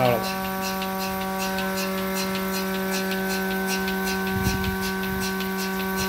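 Mini milking machine running during milking: a steady electric hum with a rapid, regular ticking. A dull thump sounds once, a little past halfway.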